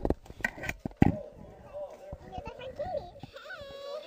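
A recorded voice raised in pitch with Audacity's Change Pitch effect, playing back: a high, thin voice drawing out the word "how" in long vowels that waver up and down.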